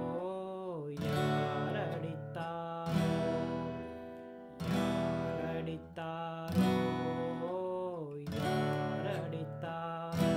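Yamaha steel-string acoustic guitar strummed slowly in 6/8 through E minor, B minor, D major and back to E minor, each chord struck and left to ring. A man's voice sings the melody along with it.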